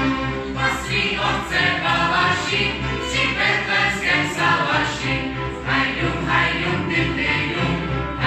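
Mixed voices of a Wallachian folk ensemble singing a folk song together in chorus, accompanied by fiddles.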